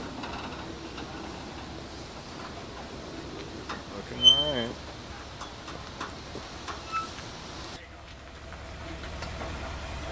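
Pickup truck engine running low and steady while reversing a dump trailer. There is a short, wavering human vocal sound about four seconds in.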